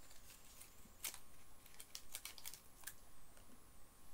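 A scatter of short, sharp clicks and crackles from hands handling and breaking pieces of chocolate, the loudest about a second in and a quick cluster near the middle.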